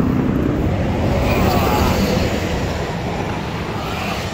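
A car engine idling nearby with a steady low rumble that eases slightly toward the end.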